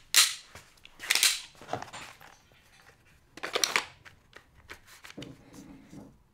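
Clatter of hard gear being handled: three loud, short clacks and rattles, the first right at the start, the next about a second later and the last about three and a half seconds in, with fainter clicks between.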